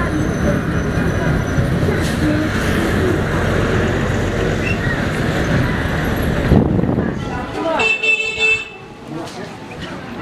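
Steady road and engine noise of a vehicle driving along a highway, with a vehicle horn tooting briefly about eight seconds in, after which the noise drops away.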